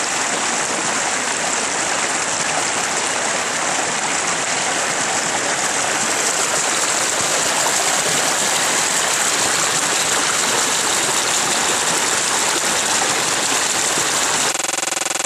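Small forest creek spilling over rocks in a little cascade: steady rushing, splashing water, a little louder from about halfway through.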